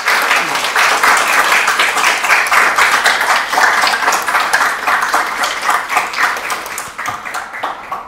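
Audience applauding, a dense patter of many hands clapping that tapers off near the end.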